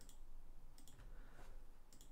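A few faint computer mouse clicks over quiet room tone.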